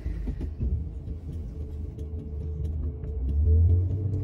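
Low steady rumble inside a car's cabin, swelling louder briefly near the end.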